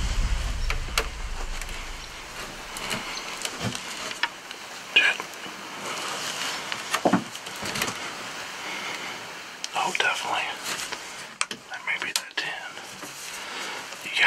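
Hunters whispering in a deer blind, with scattered light clicks and taps. A low rumble fades out in the first second.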